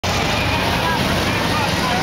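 Police motorcycle engines running at low speed as the bikes approach, with people in a crowd talking.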